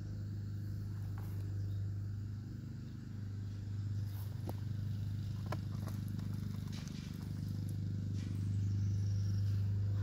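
Bare hands digging through loose potting soil in a container, with soft rustles and small crackles of soil and roots here and there, over a steady low hum.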